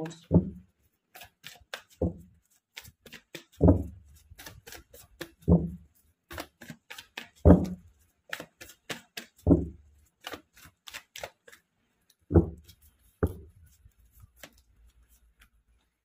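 Tarot cards being shuffled by hand: a steady patter of quick card flicks, with a heavier soft thud every second or two as the cards are knocked together.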